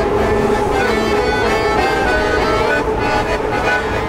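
Accordion playing sustained chords over the low rumble of a moving Métro train.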